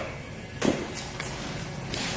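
Short wooden knocks and handling noise as plywood cajón bodies and their oak holding pieces are moved about in a wooden gluing template; the clearest knock comes a little over half a second in, a lighter one just after a second.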